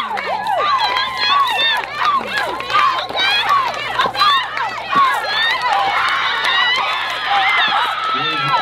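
A group of girls shouting and whooping over one another in high, rising-and-falling calls, hyping up a dancer, with some hand clapping.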